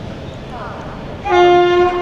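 A locomotive horn gives one short, loud, steady-pitched blast starting about a second and a half in, over the low rumble of the train rolling slowly out of the station.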